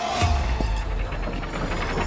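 Horror film trailer soundtrack: a sharp low hit about a quarter second in, then dense music and sound effects, with a high tone rising steadily toward the end.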